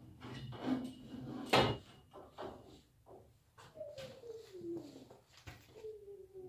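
Knocks and clatter as a fiberglass stepladder is moved and set in place, with one loud knock about one and a half seconds in. Later, two long tones slide downward in pitch, one after the other.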